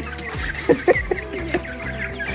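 Domestic hens clucking in short, irregular calls, over background music.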